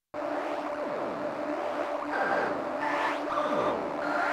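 A Rob Papen Go2 software synthesizer preset playing: a held note with repeated falling pitch sweeps, starting just after a brief silence, with higher tones joining about two seconds in.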